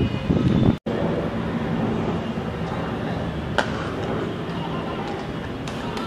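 Open-air ground ambience with faint distant voices, and a single sharp crack of a cricket bat striking the ball about three and a half seconds in.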